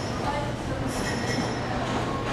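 Security-checkpoint din: a steady low mechanical hum with a high-pitched squeal about a second in, over faint background voices.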